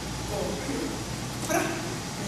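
Indistinct speech in a reverberant hall, with one short louder burst about one and a half seconds in.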